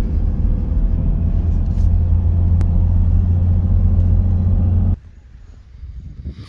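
Steady low rumble of a Toyota Land Cruiser 80-series turbo-diesel (HDJ) engine and road noise, heard from inside the cabin while driving. It cuts off suddenly about five seconds in.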